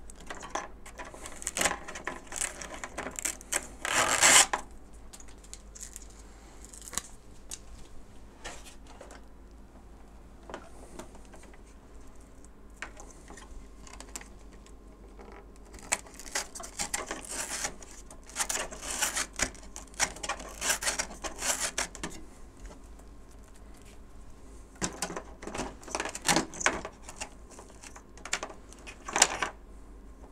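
Battery straps being pulled out of a foam RC plane's battery bay and a Velcro strip torn and pressed into place: several bouts of crackly ripping and rustling, near the start, in the middle and toward the end, with quiet pauses between.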